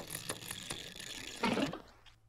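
Film projector clattering as the film runs out of the gate: fast, dense mechanical clicking, with a louder clatter about a second and a half in before it dies away.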